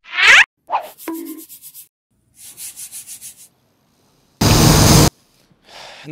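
Sound effects of an animated logo intro. A rising swoosh opens it, followed by a run of quick ticks and scratchy rustles, then a loud burst of hiss lasting about two-thirds of a second near the end.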